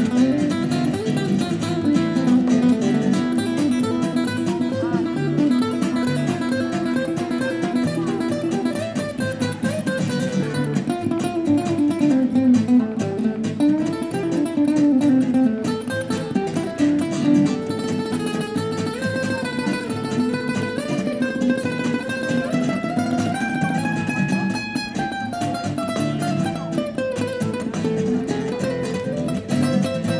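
Two acoustic guitars playing together in a flamenco style: steady chords underneath and a picked melody above that climbs and falls.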